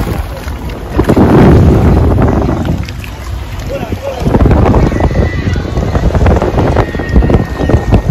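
Wind buffeting the microphone in uneven gusts, loudest about a second in and again from about four seconds on.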